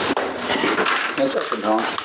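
A single sharp knock, then a second of rustling and handling noise as hands take hold of a loaded motorcycle, before a man says "no".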